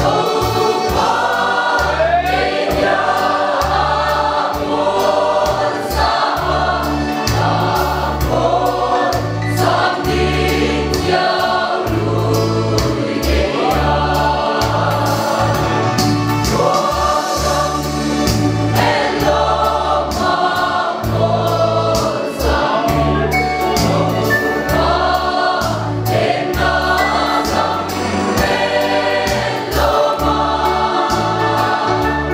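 A mixed choir of men and women singing a gospel hymn in parts, over a keyboard accompaniment with a bass line that changes note about once a second.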